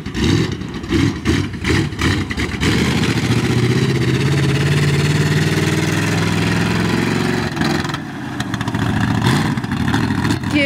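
Ford 390 big-block V8 of a lifted mud truck on 52-inch tractor tires, driving and revving: uneven bursts of throttle at first, then a sustained pull from about three seconds in, with the pitch climbing a little, easing off near the eight-second mark.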